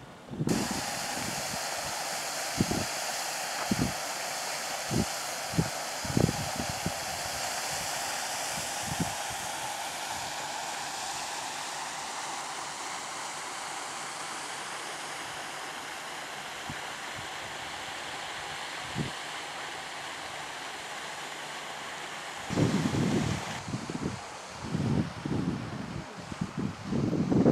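Steady hiss of a pond fountain's spray splashing onto the water, with wind buffeting the microphone in short low thumps, most often in the first few seconds and again near the end.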